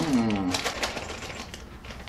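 Plastic vacuum-sealer bag crinkling and rustling in the hands, a quick run of small crackles, with a short hummed "mm" at the very start.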